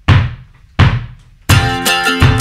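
Band music: two hard drum hits, each a low thump with a cymbal crash ringing away, about three quarters of a second apart, then the full band comes in with a steady beat about one and a half seconds in.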